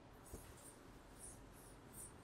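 Faint rubbing swishes of a handheld eraser wiping marker off a whiteboard in several quick strokes, with one light knock about a third of a second in.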